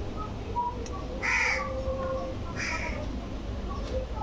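A bird calling twice, two short harsh calls about a second and a half apart.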